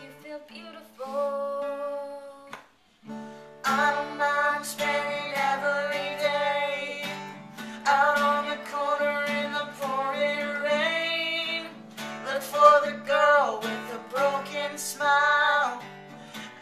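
Acoustic guitar strummed under a man and a woman singing a duet. After a short break about three seconds in, the voices come back fuller and carry on to the end.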